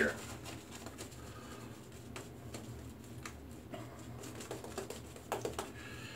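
Merkur 34C double-edge safety razor scraping over lathered stubble in short, faint touch-up strokes.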